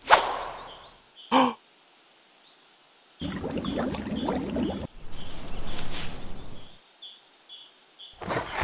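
A sudden hit with a short rustling tail at the start, then water pouring from a plastic watering can onto dry ground for about three and a half seconds, with a brief break in the middle. Birds chirp faintly throughout.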